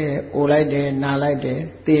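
A Burmese Buddhist monk's male voice preaching in a level, chant-like recitation, in short phrases with brief pauses between them.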